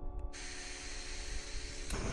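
A steady hiss, then near the end a single sharp scrape as a carabiner's ferrocerium flint (Firebiner) is struck, throwing sparks into tinder, over soft background music.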